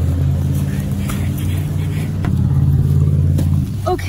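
A low, steady engine hum, as of a vehicle running nearby, with a few faint clicks over it; it swells a little past the middle and cuts off shortly before the end.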